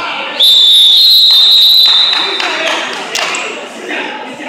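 Wrestling referee's whistle blown in one long, loud blast of about two seconds, stopping the action on the mat, over the murmur of the crowd.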